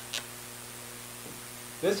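Steady low electrical mains hum on the recording, with two short high ticks right at the start and a word of speech near the end.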